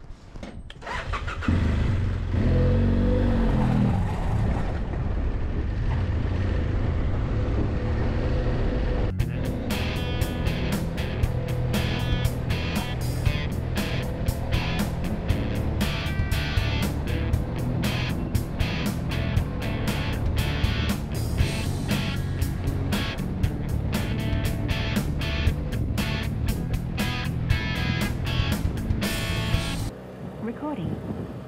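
A BMW F800GS motorcycle's parallel-twin engine starts about a second in and revs as the bike pulls away. About nine seconds in the sound cuts to background music with a steady beat.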